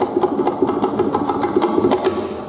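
Balinese gamelan playing a fast, steady passage: rapid, densely repeated bronze metallophone notes with sharp percussive strokes from the kendang drum and other percussion on top.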